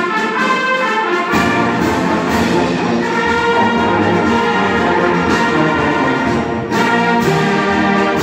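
Concert band playing sustained chords with the brass prominent; the low instruments come in about a second in, and there is a brief break and re-entry near the end.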